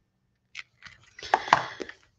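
Brief rustles and light clicks of craft supplies being handled, a plastic-packaged embossing folder picked up from the desk. They begin about half a second in, and the louder ones bunch together past the middle.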